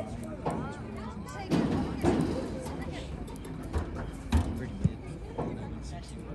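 Indistinct voices of spectators and players calling out during an outdoor soccer match, with a few short low thumps near the end.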